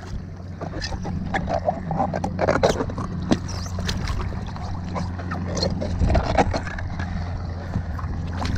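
Irregular splashes and knocks as bare feet and swim fins kick and slap in the sea water beside an inflatable paddleboard while the fins are pulled on, over a steady low hum.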